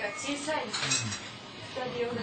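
Dishes and cutlery clinking, with a couple of sharp clinks in the first second.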